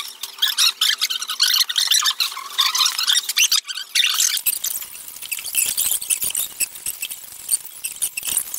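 Rapid turning of an 11x11 plastic puzzle cube's layers: a dense run of plastic clicking and squeaking, with a brief pause a little past the middle.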